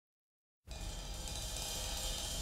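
Silence, then from about two-thirds of a second in a faint steady hiss with a low rumble: the background noise of the recording just before the song begins.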